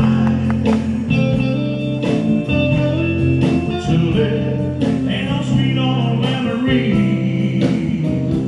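Live band music: a male voice singing over electric guitars, bass and drums, with a slow, steady drum beat.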